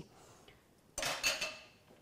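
A single clink of ceramic tableware about a second in, a china bowl knocking against a hard surface, ringing briefly before fading.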